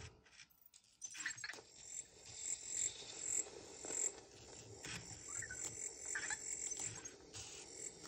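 EMO desktop robot playing its laser-eyes sound effect: a faint series of short, high-pitched electronic chirps and zaps, starting about a second in and repeating roughly twice a second.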